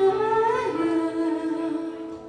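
A young woman singing a held, wavering note into a microphone over a backing track of sustained chords, with the voice fading away near the end.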